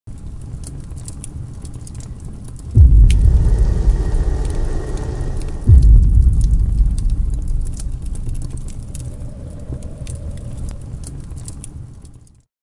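Logo-intro sound effects: a low rumble with scattered crackling, and two deep low hits about three seconds apart, each fading away slowly.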